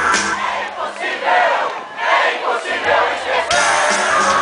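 Concert crowd cheering and shouting between songs, many voices at once. About three and a half seconds in, the band's instruments come back in.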